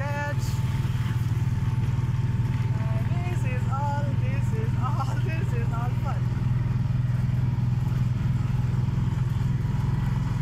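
Mahindra Alfa auto-rickshaw's engine running with a steady, loud low drone while being driven, heard from the driver's seat. A voice talks over it now and then.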